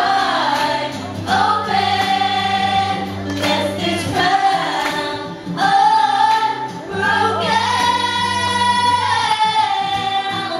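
Live female pop vocals sung into a handheld microphone over acoustic guitar accompaniment, amplified through a PA speaker, with several long held notes.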